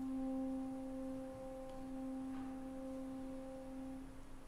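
French horns in a symphony orchestra holding one soft, steady note.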